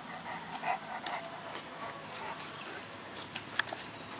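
Bullmastiffs at play, making short irregular dog vocal sounds, with a brief sharp high sound near the end.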